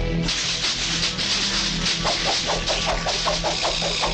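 Leafy bushes and branches rustling as someone pushes through them, starting suddenly and running on, over steady background music. From about two seconds in, a quick run of short falling chirps, about five a second.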